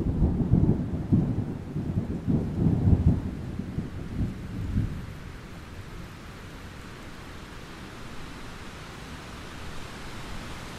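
Thunder rumbling over rain. The rumble rolls and then dies away about halfway through, leaving the steady hiss of falling rain.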